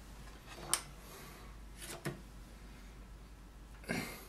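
Hands working plasticine clay on a sculpture armature: a few short, scattered taps and clicks over a faint low hum.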